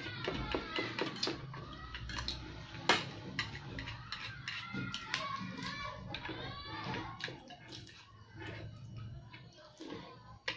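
Eating at a table: a fork and chopsticks clicking and tapping against ceramic plates in scattered sharp ticks, with faint voices in the background.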